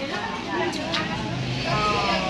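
Chatter of several women's voices overlapping, with a low steady drone coming in near the end.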